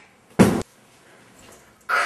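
A person landing on the floor after dropping down from a ledge: one short, loud thump about half a second in, then quiet.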